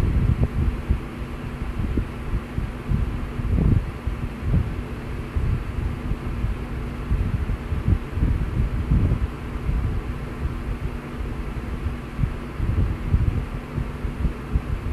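Steady low hum over an uneven low rumble of background noise, picked up by the microphone.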